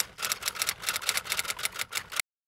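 Typewriter sound effect: a rapid run of key clacks, about eight a second, as text is typed onto the screen.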